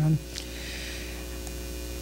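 Steady low electrical mains hum from the microphone and sound system, with a few faint steady overtones, heard in a pause in the talk.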